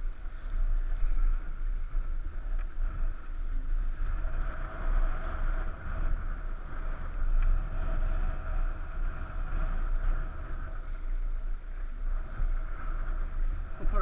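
A steady rush of river water around an inflatable raft moving down a current, with a deep rumble of wind on the microphone.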